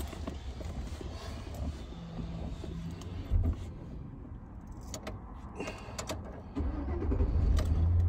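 Low rumble of a pickup truck's engine heard from inside the cab, with a few sharp clicks and knocks. The rumble grows clearly louder near the end.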